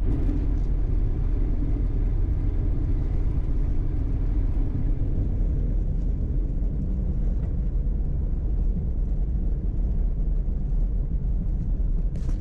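Jeep driving along a paved road: steady low rumble of engine and tyres that holds even throughout.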